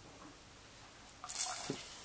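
Near silence, then about a second in a short hissing splash as a small amount of vanilla extract is poured into a saucepan of hot cream, followed by a faint click.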